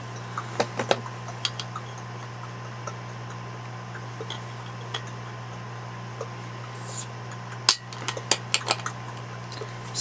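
Glass beer bottle being handled and worked open, with scattered glassy clinks and clicks and one sharper click about three quarters of the way in. A steady electrical hum runs underneath.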